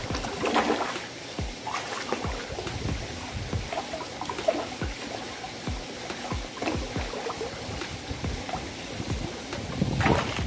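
Water trickling and sloshing in an aquaponics fish tank. Irregular small plops and knocks at the surface come as fish take floating feed pellets.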